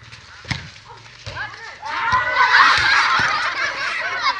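A volleyball struck once, a sharp smack about half a second in. Then from about two seconds in many women's voices break out in loud, overlapping shouting.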